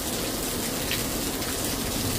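Heavy rain pouring down steadily, a constant rushing hiss.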